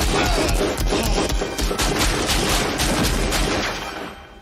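A rapid string of pistol shots, several a second, fired up through a wooden tabletop from a 9 mm Beretta 92F, with heavy low-end booms.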